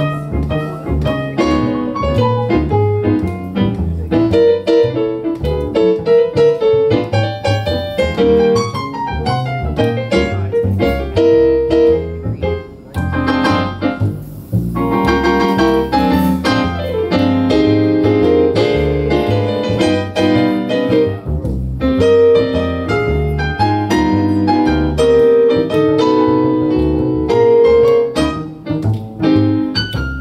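Live jazz combo playing, led by a grand piano running a busy line of notes over an upright double bass.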